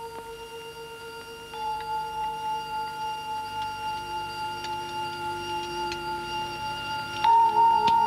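Steady electronic tones from a film soundtrack, several held pitches at once, with faint scattered clicks. They grow louder about a second and a half in and again near the end.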